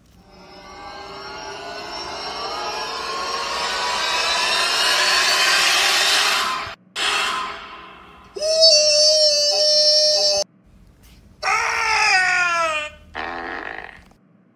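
A string of cartoon sound effects and voice. A noisy swell grows louder for about six seconds and cuts off. A loud, drawn-out "Ooooo!" shout lasts about two seconds, then comes a sound that slides down in pitch, and a short fart near the end.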